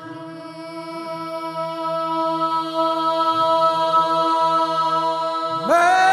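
Orthodox church choir singing a cappella, holding one long sustained chord, then sliding up into a higher, louder chord near the end.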